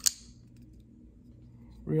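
Riot K1 folding knife flicked open: one sharp metallic snap right at the start as the blade swings out and locks, with a brief ring after it.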